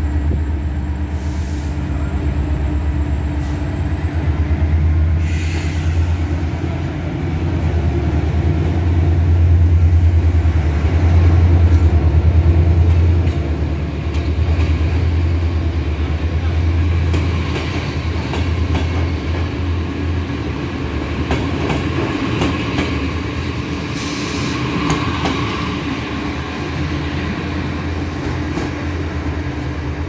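Locomotive-hauled passenger train moving slowly along the platform: a steady low rumble that swells and eases, with the coaches' wheels clicking over rail joints through the second half.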